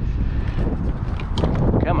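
Wind buffeting the microphone in a steady low rumble, with a couple of short clicks about two thirds in.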